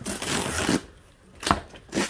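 Cardboard box being torn open along its tear strip: a rough ripping of cardboard for under a second, then a single sharp knock about halfway through.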